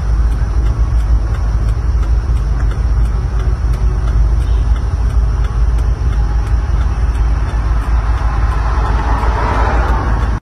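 Steady outdoor noise from a phone video's sound track, a dense roar with a heavy low rumble that grows a little brighter near the end.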